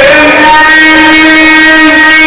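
A man's voice chanting Quran recitation (tajweed) in a melodic style, very loud. A rising glide at the start settles into one long held note.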